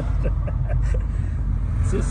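Steady low rumble of a moving car heard from inside the cabin, from the road and the engine.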